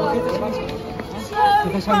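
Speech only: a man's voice talking briefly, asking whether he can sing another song, over a light outdoor background.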